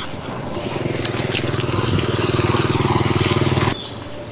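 A small engine running with a fast, even pulse, growing louder over about three seconds, then cutting off abruptly near the end.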